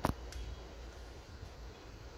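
A single sharp click right at the start, then a fainter tick and low handling rumble as a multimeter probe is handled and repositioned over a laptop motherboard.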